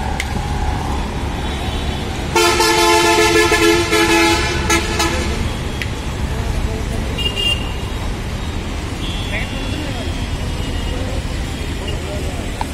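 Steady road-traffic rumble, with a vehicle horn sounding loudly and steadily for about three seconds starting a couple of seconds in. Later there are brief, fainter high-pitched toots.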